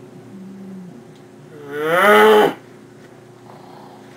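A person's loud, drawn-out vocal noise, under a second long and rising in pitch, about halfway through. A faint low hum comes before it.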